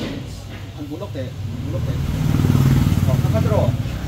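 A passing motor vehicle's engine, a low rumble that swells about two seconds in and eases off near the end, with people's voices murmuring faintly over it.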